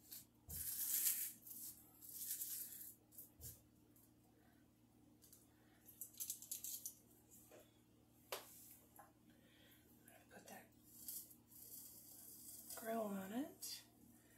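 Hands handling corn on the cob in a plastic microwave grill: scattered rustles, light clicks and knocks as the ears are turned over. A short murmured voice sounds near the end.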